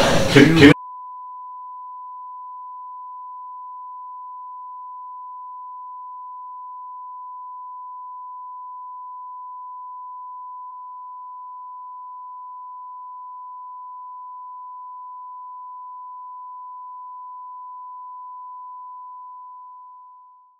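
A single steady high-pitched censor beep tone, held for about twenty seconds after a burst of laughter is cut off, blanking out a copyrighted song in the audio; it fades out near the end.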